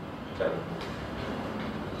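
Steady background noise of a room recording, a constant rumbling hiss, with one short spoken word about half a second in.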